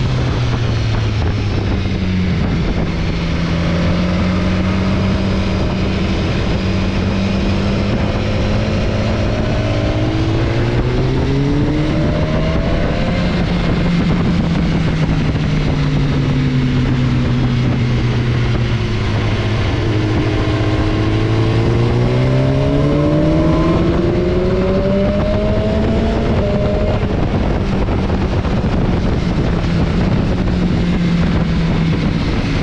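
BMW S1000XR inline-four engine heard from on board while riding, revs climbing twice, about ten seconds in and again about twenty seconds in, and dropping back in between.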